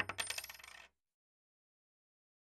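Sound effect of coins dropping and clinking: a sharp first clink, then a quick run of smaller clinks that dies away within about a second.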